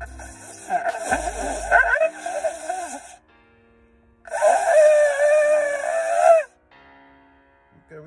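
Ram's-horn shofar blown by a beginner: two blasts of about two seconds each, the first wavering and breaking in pitch, the second held steadier and louder.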